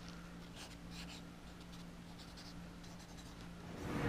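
Sharpie marker writing on a paper luggage tag: faint, short scratchy strokes, some quick and close together, over a steady low hum.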